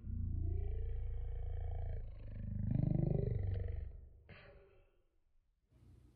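A man making a long, low, guttural vocal sound in two drawn-out parts, the second rising and then falling in pitch, with no words in it. A short click follows about four seconds in.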